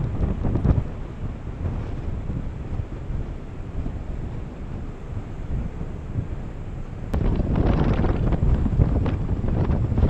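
Strong wind buffeting the camera microphone in gusts, with a louder, harsher gust from about seven seconds in.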